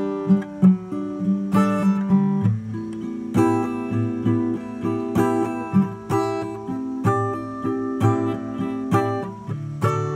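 Acoustic guitar playing an instrumental passage of chords, with a steady rhythm of accented strokes about twice a second.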